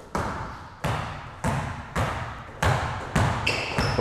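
A basketball dribbled hard on an indoor court floor: about six bounces a little over half a second apart, each echoing in the gym. Near the end a sneaker squeaks on the floor.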